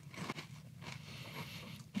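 Faint chewing of a mouthful of Strawberry Milkshake Frosted Flakes in milk, with a few soft, irregular crunches.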